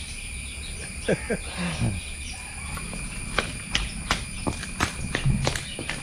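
A horse's hooves clopping on a paved courtyard as it is led at a walk, starting about halfway through, over a steady high drone of crickets.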